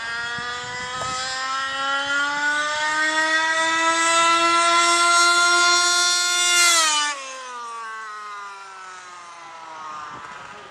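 HPI Baja 1/5-scale RC car's two-stroke petrol engine running flat out on a speed run. Its pitch climbs steadily and it grows louder as the car accelerates. About two-thirds of the way through, the pitch drops sharply as the car passes close by, and then it carries on fainter as the car goes away.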